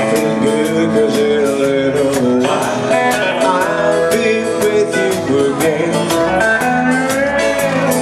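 Live country band playing a song: electric and acoustic guitars over drums keeping a steady beat.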